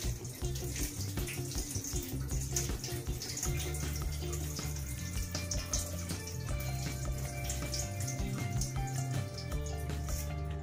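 Rinse water from washed rice pouring out of a metal pot through the fingers into a stainless steel sink, a steady trickling splash. Background music with a steady bass line plays under it.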